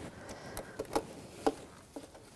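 A few faint, scattered clicks of metal picks and a gloved hand working a tight plastic electrical connector off a camshaft position sensor.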